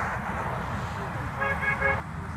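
A passing car's horn sounding three short, quick honks near the end, over the steady noise of highway traffic.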